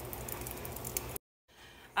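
Blended guajillo chile sauce poured through a mesh strainer into a pot, a splashing, pattering pour that cuts off abruptly a little past a second in.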